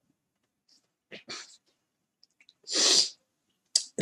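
A man sneezes once, about three seconds in, after a couple of short breaths.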